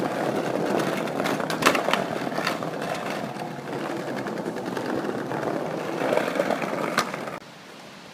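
Skateboard wheels rolling fast over brick paving: a steady rough rumble with a few sharp clacks. It cuts off suddenly near the end.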